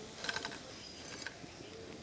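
Oil sizzling in a metal kadai as balls of roti-and-potato mixture deep-fry, with a short rattle of clicks about a quarter second in.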